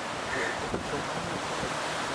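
Steady hiss and rumble of wind on the microphone.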